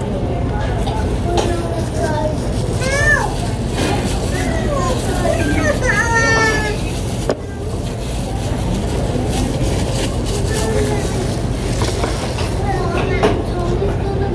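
Background chatter of a busy restaurant dining room: overlapping voices, with a high, sliding voice standing out twice, about three and six seconds in, over a steady low hum.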